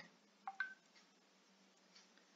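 Near silence, broken about half a second in by a short two-note electronic beep: a low tone, then a higher one.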